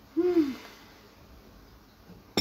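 A woman's brief closed-mouth hum, a short "mm" of about half a second just after the start that falls in pitch.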